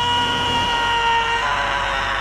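A man's long, high-pitched scream held on one note, wavering and turning rougher about halfway through.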